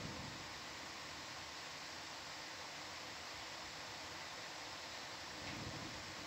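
Steady hiss of an open intercom/broadcast audio line with nothing else standing out; a faint low rumble comes in briefly near the end.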